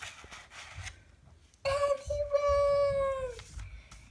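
A picture-book page rustling as it is turned, then a long, high, held cry of nearly two seconds that falls away at its end. The cry is the loudest sound.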